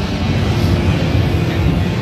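Steady low rumble of background noise in a busy exhibition hall.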